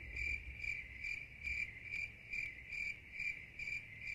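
Cricket chirping in a steady, even rhythm, about two and a half chirps a second, over a faint low rumble.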